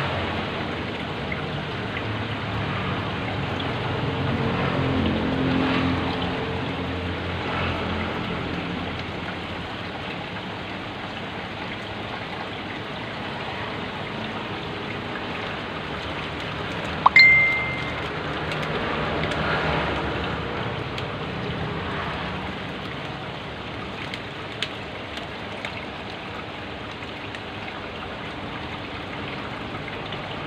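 Steady trickling and bubbling of aquarium water from the tank's air line and filter. About 17 s in, a sharp click with a short high beep cuts through it.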